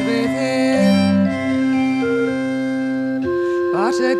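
Instrumental interlude in a traditional folk song: sustained organ chords held steady and changing about once a second, with rising slides near the end as the next phrase comes in.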